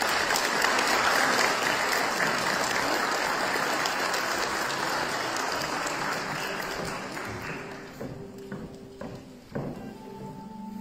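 Audience applauding, starting at once and dying away over the last few seconds, with a few knocks near the end.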